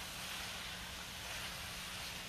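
Shrimp, zucchini and fresh garlic sizzling in a stainless steel skillet, a steady quiet hiss.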